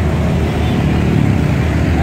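Steady noise of road traffic, with vehicle engines running close by in slow, jammed traffic.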